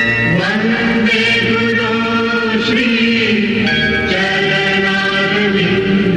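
Devotional chanting sung over music, with sustained steady tones beneath the voice.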